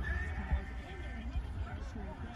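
Low rumble inside a moving car, with a thin high squeal lasting about a second at the start.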